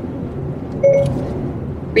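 Steady road and engine noise inside the cabin of a 2020 Hyundai Santa Fe driving at highway speed, with a short electronic tone about a second in.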